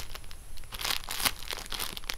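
Clear plastic packaging bag crinkling as a squishy inside it is handled, in a run of irregular small crackles.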